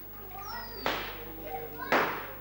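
Faint children's voices in the background, with two short hissing noises, one about a second in and a louder one near the end.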